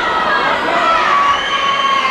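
Boxing crowd shouting and cheering, with several long, high-pitched shouts overlapping.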